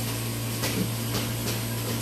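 Tabletop ceramic water fountain running: its small electric pump hums steadily under the even hiss of trickling, splashing water.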